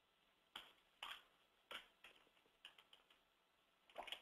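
Near silence broken by several faint, short clicks at irregular intervals.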